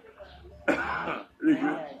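A man coughing and clearing his throat: two short rough bursts about two-thirds of a second apart.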